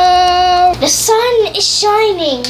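A child singing: one long held note that breaks off just under a second in, followed by shorter sung notes sliding in pitch.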